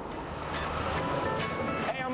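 A box delivery truck driving up and drawing nearer, growing louder, over background music.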